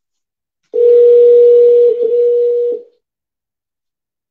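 Telephone ringback tone on an outgoing call: a single steady tone lasting about two seconds, starting under a second in, the sign that the call is ringing at the other end.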